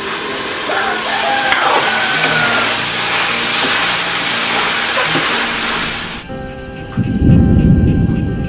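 Green beans sizzling as they are stir-fried in a hot wok, a loud steady hiss. About six seconds in it cuts to music, and a deep rumbling swell comes in about a second later.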